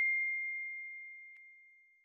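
A bell-like ding sound effect ringing out as one clear high tone, fading steadily away over about two seconds, with a faint click partway through.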